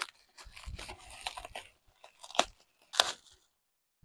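Plastic bubble wrap crinkling and crackling as it is pulled open and peeled off by hand, with three sharper crackles among the rustle.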